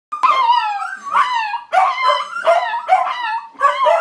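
Corgi howling and yipping in a string of short calls, one after another, each falling in pitch, set off by sirens.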